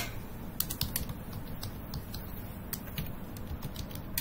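Typing on a computer keyboard: short, irregular key clicks.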